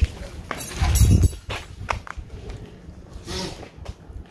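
Scattered footsteps on a paved street, a few irregular steps, with a short low rumble about a second in.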